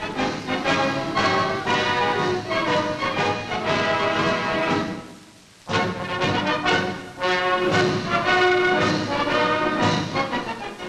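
Brass band music playing held chords, fading away about halfway through and starting again moments later.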